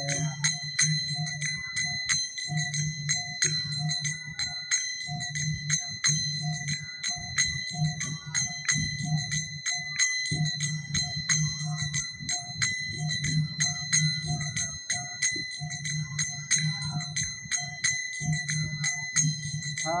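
Small brass hand cymbals (kartals) struck in a steady kirtan rhythm, about three ringing strikes a second, over a low pulsing beat.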